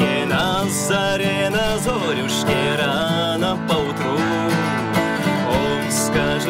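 A man singing a folk-style song to his own strummed acoustic guitar.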